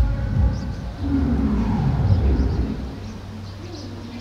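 Wind buffeting the microphone, a loud, uneven low rumble that eases about three seconds in. A drawn-out, falling call sounds faintly in the middle.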